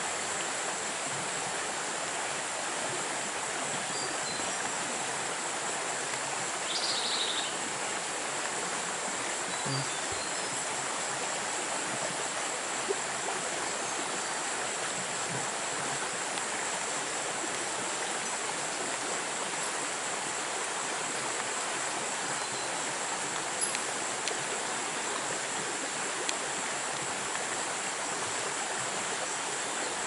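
Steady, even rushing noise like running water, with a thin, unchanging high-pitched tone over it. A short high chirp comes about seven seconds in.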